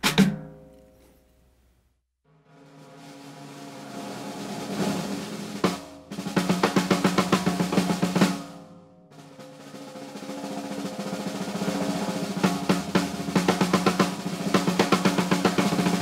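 DW Collector's Purpleheart snare drum with its snare wires on, played with sticks: a roll that swells in loudness, then a run of fast strokes, and the same again a second time. The sound is huge and really cutting.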